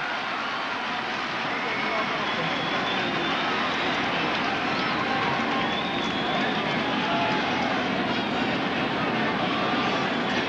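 Ballpark crowd noise: a steady murmur of many voices, swelling over the first couple of seconds and then holding.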